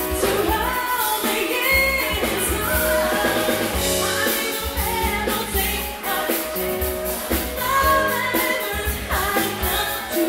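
A live soul band playing: singing over electric guitar, bass guitar, drum kit and keyboards, with a steady drum beat.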